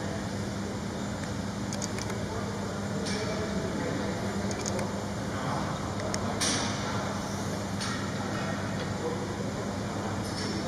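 Steady low mechanical hum of a large gym hall, with faint background voices and a few scattered sharp clinks of weight-machine metal.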